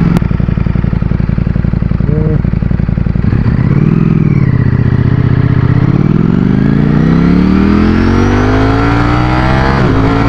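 Ducati Streetfighter V4's V4 engine under the rider. It runs at low revs at first, rises and falls briefly about four seconds in, then climbs steadily in pitch under hard acceleration from about six seconds, and drops as it shifts up near the end.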